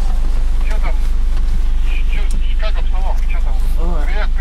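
Steady low engine drone of a GT tracked all-terrain carrier, heard from inside its passenger cabin, with men's voices talking faintly over it.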